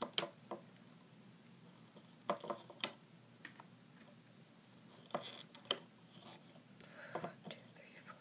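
Small plastic clicks and rubber-band snaps as fingers place and push loom bands onto the pegs of a plastic Rainbow Loom. They come in short clusters a few seconds apart, with near-quiet handling in between.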